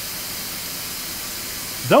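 Steady background hiss with no distinct events, then a spoken word right at the end.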